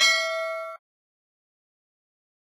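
Notification-bell 'ding' sound effect ringing with several steady tones, then cutting off suddenly less than a second in.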